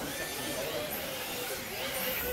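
Two radio-controlled drift cars running, their electric motors whining steadily as they accelerate.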